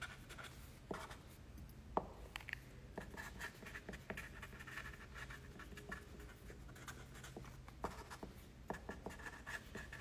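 Faint scratching and rubbing close to the microphone, with a few soft taps: a hand handling the recording phone. The loudest tap comes about two seconds in, and there are two more near the end.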